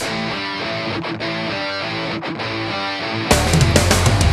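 Rock song with guitars. A thinned-out passage with the bass and drums dropped away, then the full band with drums comes back in, louder, a little over three seconds in.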